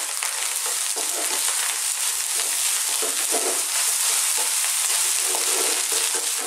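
Rice and egg sizzling steadily as they fry in a pan on very high heat, while a plastic spatula stirs and turns them over.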